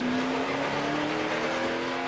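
NASCAR Cup Series stock car's V8 engine running, heard through the in-car camera, its pitch rising slowly and steadily.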